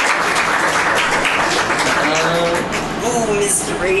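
Audience applauding, the clapping thinning out about two seconds in as voices start talking.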